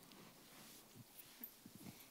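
Near silence: room tone, with a few faint, soft, low knocks in the second half.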